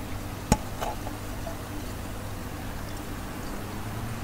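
A single sharp click about half a second in, from handling the frying pan and its turner, over a steady low background hum.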